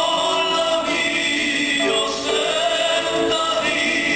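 A mariachi ensemble playing live, a steady stream of long held notes that step from pitch to pitch.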